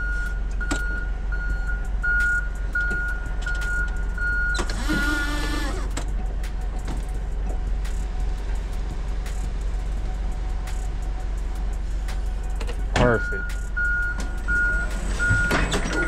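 Toyota forklift at work: its warning alarm beeps about twice a second for the first four seconds and again near the end, over a steady low engine rumble, as it lowers a pallet into a cargo van and backs the forks out.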